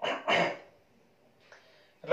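A man clearing his throat twice in quick succession in the first moments, then quiet apart from a faint breath near the end.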